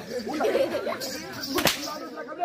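A thick twisted rope whip cracked once, a single sharp crack near the end, over a murmur of voices.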